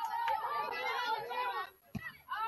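Several people's voices talking over one another in unintelligible chatter, with a short low knock near the end.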